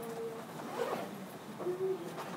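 Classroom background noise: faint voices with a brief rasping rustle about a second in.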